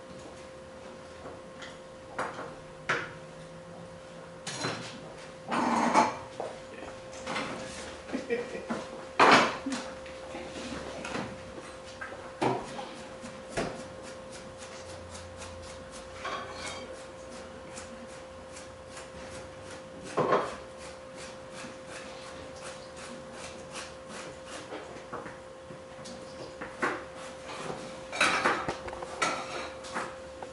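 A kitchen knife slicing carrots into rounds on a cutting board: scattered knocks, then a long run of even taps at about three a second, with occasional clatter of dishes and utensils over a steady faint hum.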